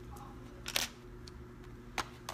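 Makeup tools handled in the hands: a brief sharp clatter of a brush or pencil about three-quarters of a second in and a short click near the end, over a steady low electrical hum.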